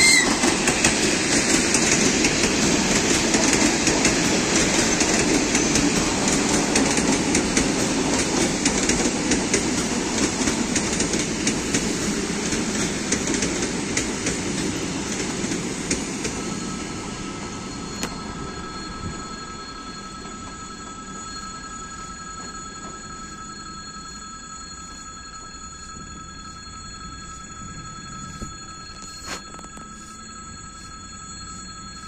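ED4M electric multiple unit passing close by: loud wheel-on-rail rumble and rapid clatter, loudest in the first few seconds and then fading as the train draws away. From about sixteen seconds a steady high ringing tone sounds over the fading rumble.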